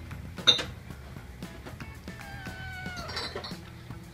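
A domestic cat meows once, a long call falling in pitch, starting about two seconds in, over background music. A sharp clink about half a second in is the loudest sound.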